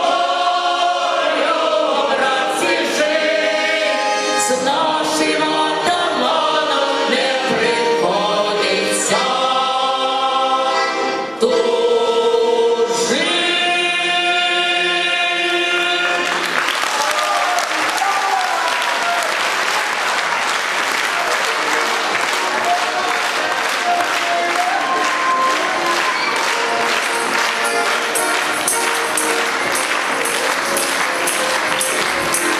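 Male choir and a woman soloist singing, the song ending on a held chord about halfway through. After that, the audience applauds steadily.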